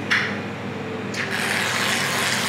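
An aerosol can of coconut whipped topping sprays onto a waffle, a steady hiss starting about a second in, after a short sound at the start.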